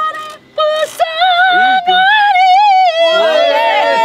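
A high singing voice holds one long, slightly wavering note, then several people laugh near the end.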